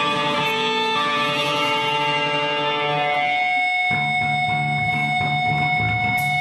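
Live rock band playing, led by electric guitars; about four seconds in the music cuts to a new, more rhythmic passage.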